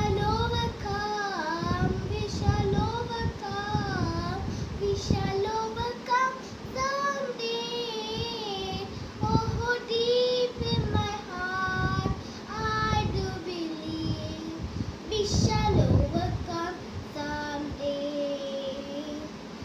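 A young boy singing an English song alone, in sung phrases with short breaks between them and a few long held notes.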